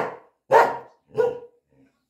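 Norwegian Elkhound barking twice, two short barks about two-thirds of a second apart.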